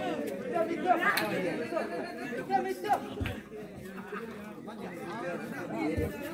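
Overlapping chatter of several people talking at once, with a couple of sharp clicks about one second and three seconds in.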